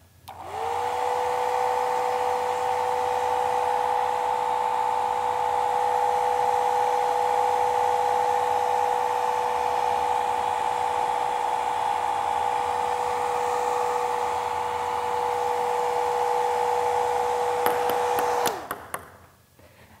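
Old-fashioned handheld hair dryer switched on, its motor spinning up within a second to a steady blowing whine with two steady tones. It runs for about eighteen seconds, then a few clicks come and it is switched off and winds down near the end.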